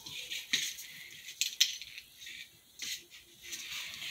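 A few light, sharp clicks and rattles of Christmas ornaments and their hooks being handled.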